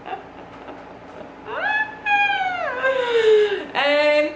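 A woman's long, high-pitched vocal squeal while laughing, starting about a second and a half in, rising, holding, then sliding down over about two seconds; a short second high note follows near the end.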